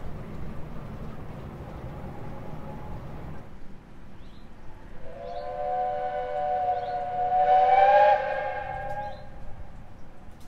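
Steam whistle of a lake steamer sounding one long chord of several tones. It starts about halfway through, swells to its loudest and cuts off shortly before the end.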